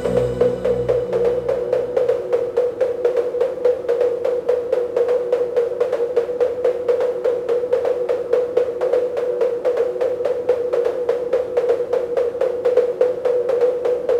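Electronic dance track in a breakdown: the heavy bass drops out at the start, leaving a held mid-pitched tone under fast, even drum hits at about four or five a second.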